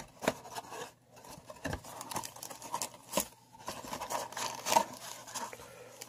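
Foil trading-card packs and a cardboard hobby box being handled as the packs are pulled out: irregular crinkling rustles and light knocks.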